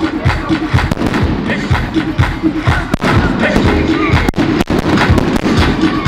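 Fireworks going off during a show set to music: music with a steady beat runs under the launches, and a few sharp firework bangs stand out about halfway through.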